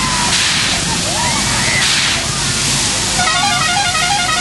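Fairground ride running: a steady loud rush and rumble of machinery with faint shouting voices over it, and a brief run of quick repeated tones near the end.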